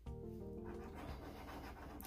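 Faint scraping of a copper coin rubbing the scratch-off coating from a paper lottery ticket.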